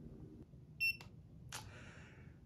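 GVDA 168B clamp meter giving a single short, high-pitched electronic beep, followed by two faint clicks.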